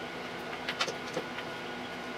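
Faint, scattered small clicks of a hex key turning and tightening an adjusting screw in a metal laser mirror mount, over a steady faint hum.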